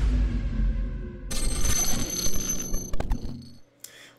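Logo sting for a channel intro. A deep bass boom dies away, then a bright, high, ringing electronic chime enters about a second in, with a few clicks, and fades out just before the end.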